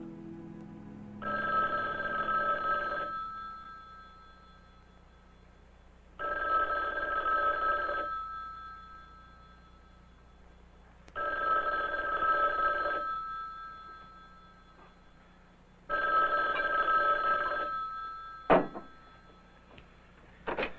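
Telephone bell ringing four times, each ring about two seconds long and about five seconds apart. The last ring is cut off by a sharp click as the handset is lifted to answer.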